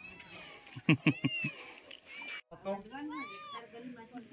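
A kitten meowing several times: short, high, arching calls.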